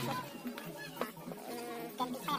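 An insect buzzing, with a sharp light click about a second in.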